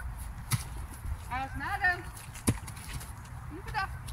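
Short snatches of quiet talk, with two sharp clicks about half a second and two and a half seconds in, over a steady low rumble.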